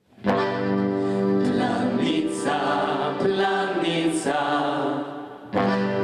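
Slovenian folk ensemble performing: voices singing together over accordion and brass, starting suddenly just after the start, with a short dip near the end before the music comes back.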